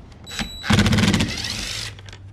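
Cordless impact driver with a 10 mm socket spinning up with a brief high whine, then hammering rapidly for a little over a second as it loosens the 10 mm bolt that holds the car's door panel.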